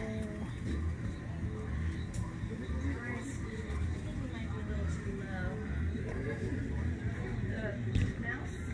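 Arcade background: music with a heavy low bass and voices chattering at a distance.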